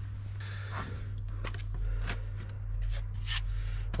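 Light rustling, scraping and a few short clicks of items being handled and picked up, over a steady low hum.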